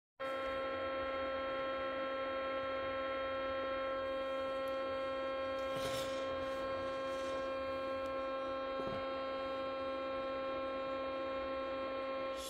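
Shortwave financial-trading data signal on 16.070 MHz received in AM on a Yaesu FTdx10 transceiver: a steady chord of many fixed tones over a faint hiss, unchanging throughout.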